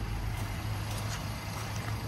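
A Honda Ridgeline's 3.5-litre V6 idling in remote-start mode: a steady low hum under an even hiss.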